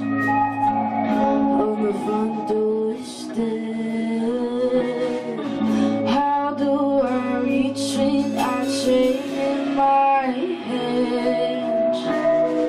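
A woman singing over a strummed guitar in a live performance, with long held and sliding vocal notes.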